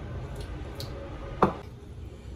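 Kitchen utensil handling at a mixing bowl: a few faint ticks, then one sharp click of metal on the bowl about a second and a half in.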